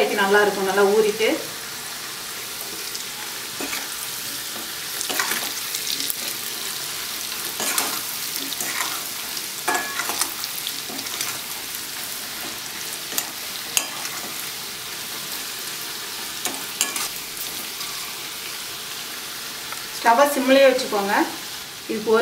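Pieces of boiled amla (Indian gooseberry) sizzling steadily in hot oil in a pan, while a metal ladle stirs and scrapes the pan, with scattered sharp clicks.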